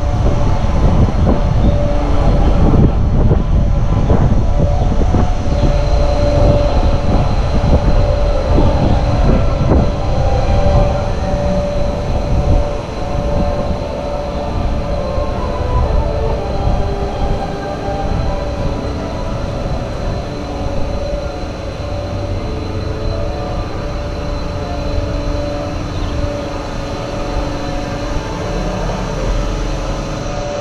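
A spinning chair-swing ride in motion: wind buffeting the microphone as the ride goes round, over a steady mechanical whine. The rush eases about twelve seconds in as the ride slows toward a stop.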